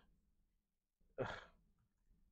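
A man's single exasperated sigh, 'ugh', about a second in, short and breathy, falling in pitch; the rest is near silence.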